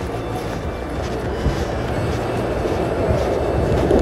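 City street traffic: a steady low rumble of passing cars, growing slightly louder toward the end.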